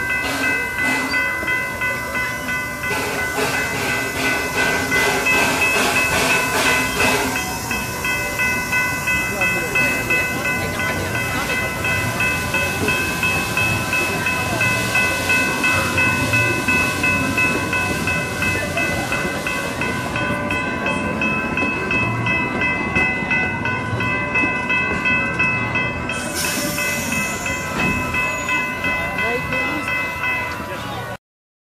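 Railroad crossing bell ringing in quick, even repeated strikes, its tones held without a break, while a train passes. A short burst of hiss comes near the end.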